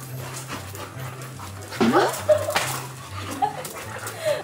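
Siberian huskies vocalizing, with one loud call about two seconds in that dips and then rises in pitch, followed by a few shorter sharp sounds. A low repeating bass line from background music runs underneath.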